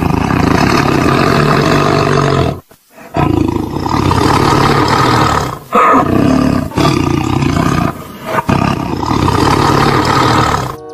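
Tiger roaring and growling in several long, loud, rough calls with brief breaks between them.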